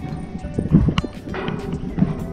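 Footsteps knocking on the slatted steel treads of an observation-tower staircase, with one sharper metallic knock about halfway through, under background music.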